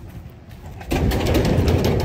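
Steel checker-plate gate being opened: a sudden rattling metal scrape and rumble that starts about a second in and keeps going.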